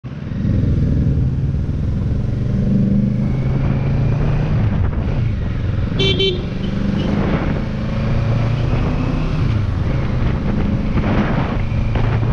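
Motorcycle engine pulling hard through the gears, its pitch dropping at each upshift and climbing again, with wind rushing over the microphone. About six seconds in, a horn gives two quick toots.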